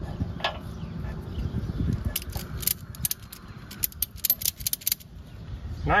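Ratchet strap being cranked tight over a dirt bike's rear tire, its pawl giving a quick run of sharp clicks from about two seconds in to about five seconds in. Wind rumbles on the microphone throughout.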